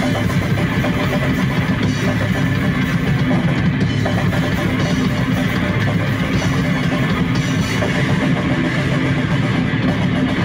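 Live rock band playing on stage: drum kit and amplified electric guitar, loud and continuous with no break.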